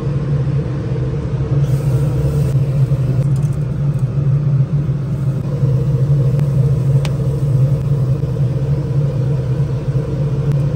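Steady, low-pitched mechanical hum of a running motor, unchanging throughout, with one faint click about seven seconds in.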